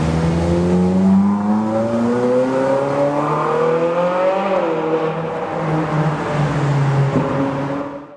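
Ferrari 458 Spider's V8 accelerating away, its note rising steadily for about four and a half seconds, then dropping back and pulling on at a lower pitch. The sound cuts off suddenly at the end.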